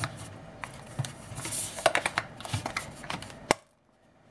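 Light plastic clicks and rustling as a three-pin mains plug and its cable are handled and pushed into an extension board, with one sharper click near the end before the sound cuts out to silence.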